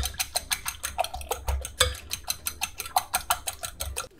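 Raw eggs being beaten with a fork in a glass bowl: the fork clicks rapidly and evenly against the glass, about seven or eight strokes a second.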